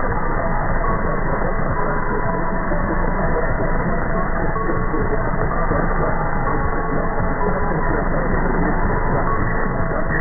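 Medium-wave AM radio reception on 747 kHz through a KiwiSDR: a faint, slow string of held tones at changing pitches under heavy static and interference, the audio cut off above about 2 kHz. The tones sound like an interval signal from an unidentified station.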